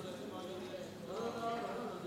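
Indistinct voices talking in the background, with some light knocking or stepping sounds among them.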